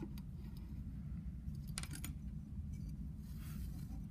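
Faint handling sounds of yarn being drawn through the holes of a clay weaving loom, with a short cluster of light clicks about two seconds in, over a steady low background hum.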